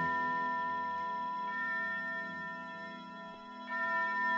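The final held chord of a psychedelic rock track, several steady tones ringing on and slowly fading away.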